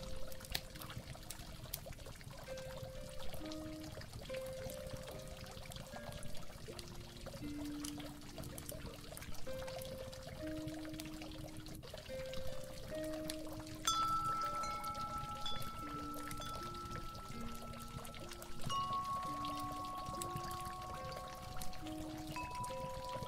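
Water pouring and trickling steadily under a slow, gentle instrumental melody of single held notes. Higher ringing notes join about two-thirds of the way through.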